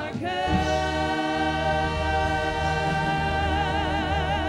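A women's worship vocal group singing in harmony with band accompaniment, holding one long note from about half a second in that takes on vibrato in the second half.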